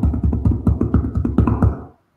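Music with a fast, busy beat, fading out near the end.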